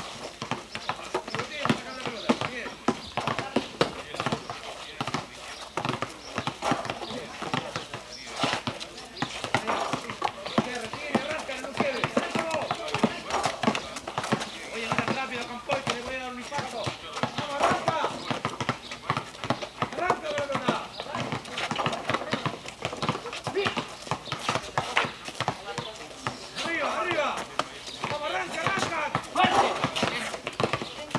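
Basketballs bouncing again and again on a hard outdoor court as players dribble, a run of quick knocks, with indistinct voices of players and coach mixed in.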